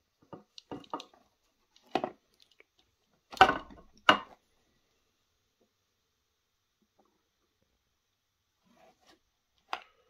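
A few short plastic clicks and knocks from a Dremel right-angle attachment being handled and set down into its hard case, the loudest two about three and a half and four seconds in. Then a long quiet stretch, with one more click near the end.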